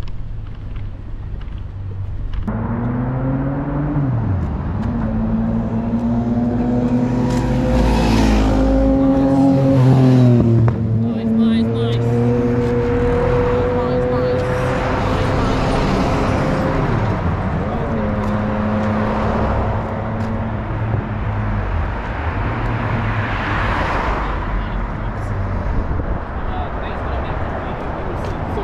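City street traffic: cars driving past close by, with engine hum that rises and falls. The loudest passes come about eight to ten seconds in and again a little before the end.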